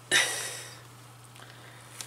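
A person's heavy exhale, a sigh, starting suddenly and fading over about half a second, over a steady low hum.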